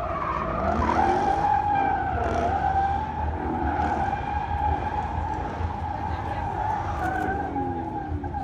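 A drifting Ford Mustang: its rear tires squeal in one long, steady high tone from about a second in, over the engine revving at high load.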